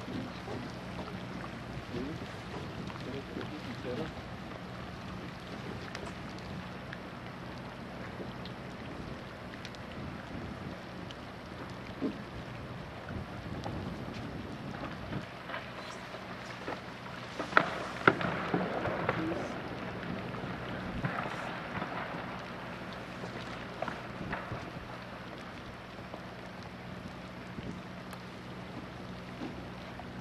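Steady low hum of a cruise ship under a wash of wind and light rain on the open deck. About 17 to 19 seconds in comes a short burst of sharp clicks and cracks, with faint voices.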